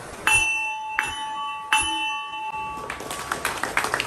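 Small hanging gong struck three times with a mallet, about three-quarters of a second apart, each stroke ringing on with a clear tone; it is sounded to close the meeting. Applause breaks out near the end as the ringing dies away.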